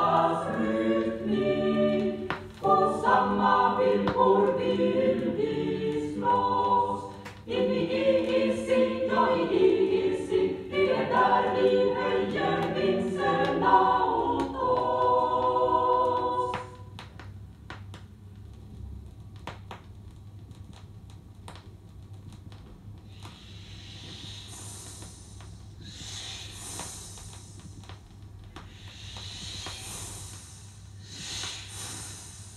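An amateur choir singing unaccompanied in chords, until the singing stops about halfway through. A much quieter stretch follows, with scattered clicks and, near the end, several breathy hissing bursts.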